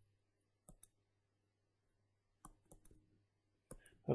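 Faint clicks of a stylus tapping a pen tablet or touchscreen while handwriting: a pair under a second in, a quick run of about four at two and a half seconds, and two more near the end, over a faint steady low hum.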